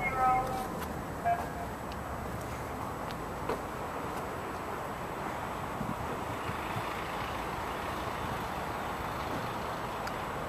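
Steady outdoor background noise, an even hiss with a few faint clicks, with a short stretch of talk in the first second or so.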